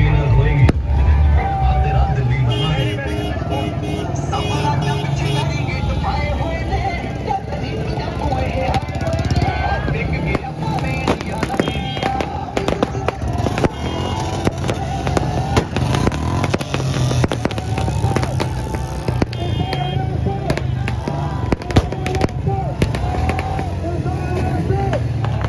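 Music with a strong beat playing over a crowd's voices, and from about ten seconds in a rapid string of sharp firecracker cracks.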